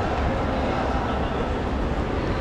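Steady noise with a low rumble, mixed with indistinct voices of people around.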